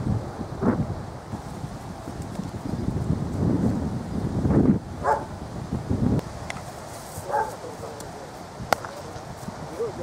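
Wind buffeting the microphone in gusts, with a few short distant calls and a single sharp crack about three-quarters of the way through.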